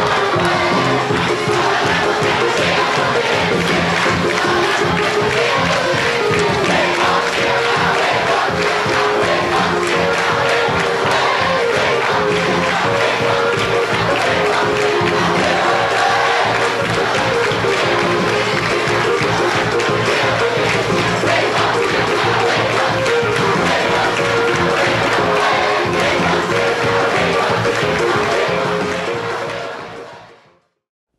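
A large crowd singing a melody together in unison, loud and steady throughout, fading out near the end.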